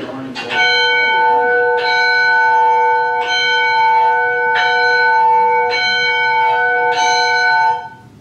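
Church tower bell, the No. 6 bell of the L. M. Rumsey Manufacturing Company, rung by its rope: six strokes a little over a second apart, each ringing on into the next, cutting off suddenly near the end. It is heard as the sound of a video recording played back.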